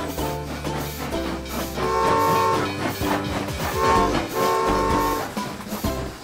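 Cheerful children's background music with a cartoon toy-train sound effect laid over it: a rhythmic chugging and a sustained whistle.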